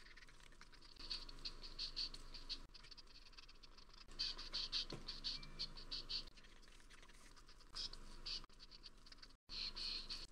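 Faint rhythmic scratching in four bursts, about four strokes a second, with quieter pauses between them.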